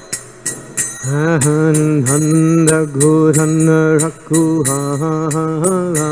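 Karatalas (small brass hand cymbals) struck in a steady rhythm of about three strikes a second. About a second in, a man's solo voice comes in, singing a devotional chant in long held notes over the cymbals.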